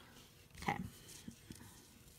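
A few faint ticks as fingertips start pushing loose sequins together on a cardstock panel, over quiet room tone.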